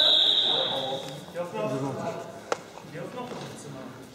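A steady high-pitched signal tone, the kind that stops a wrestling bout, sounds on and cuts off about a second in. Voices echo in the sports hall after it, with one sharp knock about midway.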